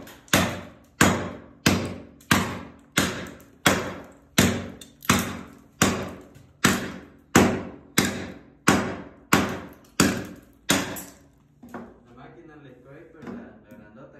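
A hatchet blade chopping into old vinyl composition floor tile, striking steadily about once every 0.7 seconds to chip the tile loose from the subfloor. Each blow is a sharp crack with a short ring after it. The strikes stop about eleven seconds in.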